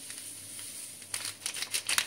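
A salep powder packet crinkling in the hands as it is emptied into a pot of milk, a faint hiss at first and then a quick run of crackles through the second half.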